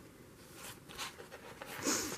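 Craft knife blade scratching through a paper page as it cuts along the outline of a picture, in a few short faint strokes with a louder one near the end.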